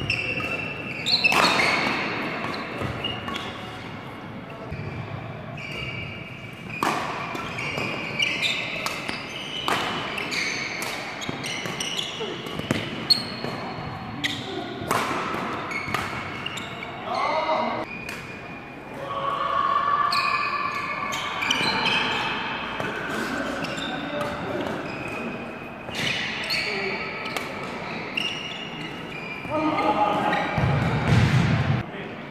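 Badminton doubles rally: repeated sharp racket-on-shuttlecock hits at an irregular pace, with court-shoe squeaks on the floor and voices in the hall.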